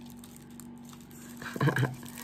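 Faint crinkling of a clear plastic wrapper as the packaged magnet inside it is turned over in the hands.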